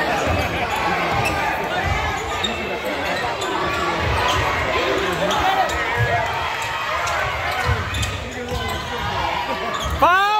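Basketball dribbled on a hardwood gym floor, a low bounce about once or twice a second. Short sneaker squeaks and a steady babble of spectators' voices echo in the hall.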